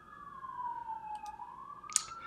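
Faint emergency-vehicle siren wailing, its pitch falling slowly and then rising again. A short click near the end.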